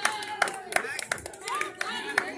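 Hand claps in a rough steady rhythm, about three a second, with children's voices calling out.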